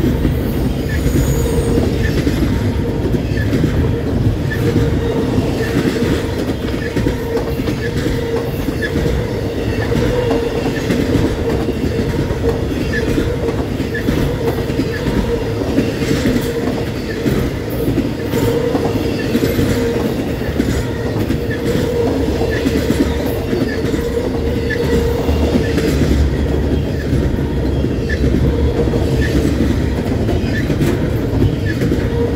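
Double-stack intermodal well cars of a freight train rolling past at speed, wheels clacking over the rail joints, with a steady tone from the wheels running underneath.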